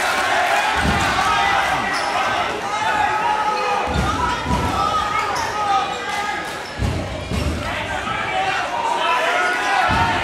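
A basketball dribbled on a hardwood gym court, a handful of separate low thuds, under the constant chatter of a crowd of spectators.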